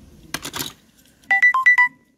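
A brief clatter, then a short electronic tune of about six quick high beeps jumping between two pitches, like a ringtone.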